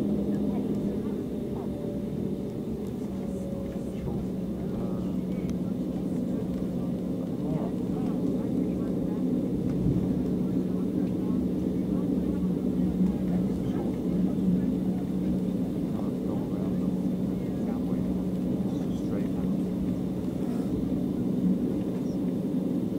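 Steady low hum inside the cabin of an Embraer 195 on the ground, its General Electric CF34-10E turbofans running at low thrust as it taxis.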